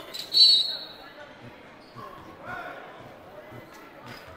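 A basketball being dribbled on a hardwood court, a dull bounce roughly every half second to second, over the murmur of an indoor arena crowd. A short, loud, high-pitched squeak sounds near the start.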